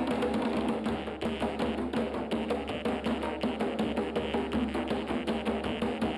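Several djembe hand drums playing a fast, steady rhythm together, over a jaw harp holding a twanging drone whose overtones sweep up and down.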